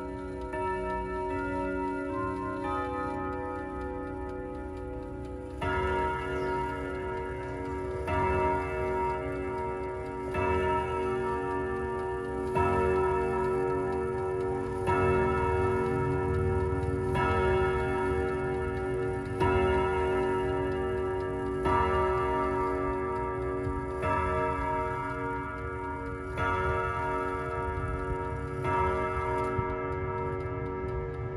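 An ODO 368 wall clock's chime being tested. A run of chime notes comes first, then, from about five seconds in, slow, evenly spaced strokes on its chime rods, one roughly every two and a half seconds, each left ringing. The clock's tick runs underneath.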